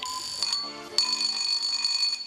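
Electronic quiz-game signal: steady high beeping tones that start abruptly, with a fresh sharp onset about a second in, over a lower buzzing tone from about half a second in.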